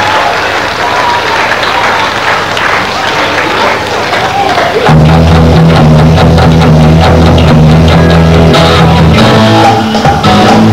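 Live rock band with electric guitars, bass and drums: applause and crowd noise with stray instrument sounds, then about five seconds in the band comes in loudly with a held chord over a steady bass note.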